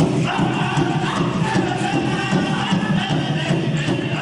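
Powwow music: chanted singing over a steady drum beat.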